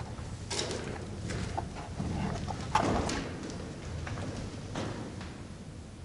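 Scuffs and scattered light knocks of someone clambering about among the steel bracing inside the tank, the loudest knock about three seconds in.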